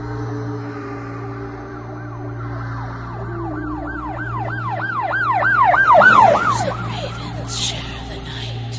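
Eerie horror-soundtrack effect: a rapid warbling wail rising and falling about three times a second, swelling to its loudest about six seconds in, then breaking off, over a low steady drone.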